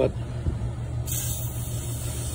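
Aerosol can of Wound-Kote antiseptic spray hissing as it is sprayed onto a tortoise shell wound, starting suddenly about halfway through and continuing. A steady low hum sits underneath.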